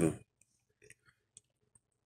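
The tail of a spoken word, then near quiet broken by about five faint, short clicks at uneven intervals.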